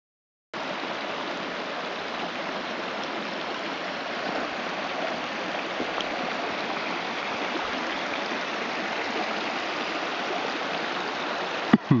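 A shallow stream running steadily over and between rocks. Near the end there is a sharp click.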